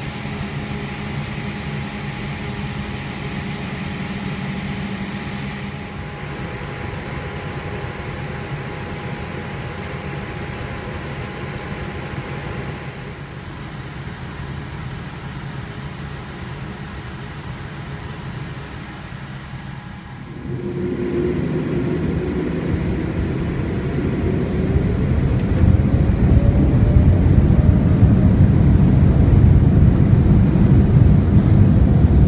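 Boeing 787-8 cabin noise heard from a window seat: a steady hum with faint steady tones. About two-thirds of the way through, the engines spool up for the takeoff roll, with a rising whine over a low rumble that grows louder to the end.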